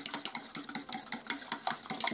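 An old fork beating cooling paraffin wax in a stainless steel melting pot, clicking rapidly and evenly against the metal as the cloudy, half-set wax is whipped into foam.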